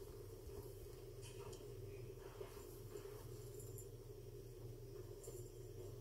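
Faint rustling of baby clothes as they are handled and pulled over a doll, a few soft scattered rustles over a steady low room hum.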